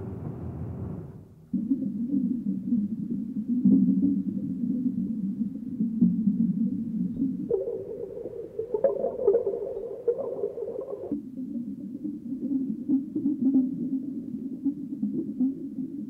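Electronic film score of low droning tones, like underwater or whale-like sounds, that switches abruptly to a new pitch texture several times.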